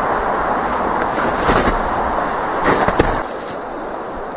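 Loud rustling and knocking from something handled right at the microphone, with a few sharper knocks; it drops quieter shortly before the end.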